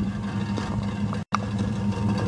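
The 2001 Dodge Ram 1500's 3.9-litre V6 idling, a steady low drone heard from under the rear of the truck. The seller says the exhaust might need a muffler clamp underneath.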